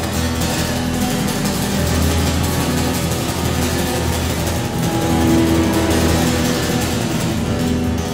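Small live band playing an instrumental passage between sung verses, with acoustic guitar, electric guitar and a small drum kit of snare and cymbal.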